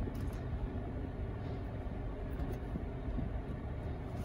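Steady low hum inside the cabin of a parked Mazda3 with the car running: engine idling and the ventilation fan blowing.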